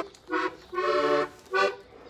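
Button accordion playing three short chords, the middle one held longest, about half a second.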